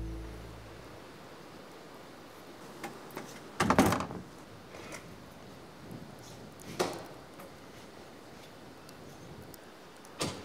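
Doors shutting: a solid thunk a little under four seconds in, the loudest sound, and a lighter thunk near seven seconds, with a few faint clicks before them. Music fades out in the first second.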